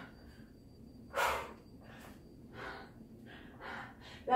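A woman's forceful breaths from the exertion of kettlebell swings and squats: one loud exhale about a second in, then a few fainter breaths near the end.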